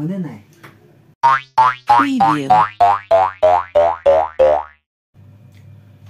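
A cartoon-style 'boing' sound effect repeated about a dozen times in quick succession, each a short springy note sliding upward in pitch, running for about three and a half seconds.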